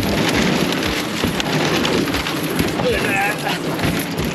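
Thin sheet ice cracking and crunching as the aluminium pontoon bows of a boat push through it: a continuous dense crackle.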